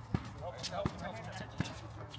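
Basketball being dribbled on an outdoor hard court: three sharp bounces about three-quarters of a second apart.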